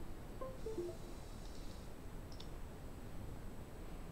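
A few faint computer clicks, with a single sharper click about two seconds in, over low room noise.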